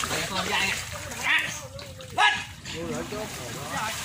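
Men's voices calling out while they wade in muddy floodwater and shift a concrete slab, with water splashing around them. Two short, loud calls stand out, one about a second in and a sharper one about two seconds in.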